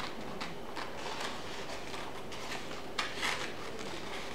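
Scissors cutting through coloured paper: a handful of short, irregular snips, the clearest about three seconds in.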